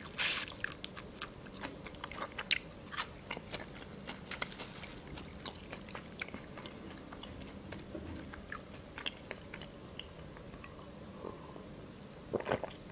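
Chewing of a tiny whole Black Sea shrimp eaten shell and all, with many short crisp crunches. The crunching is busiest in the first five seconds and thins out after.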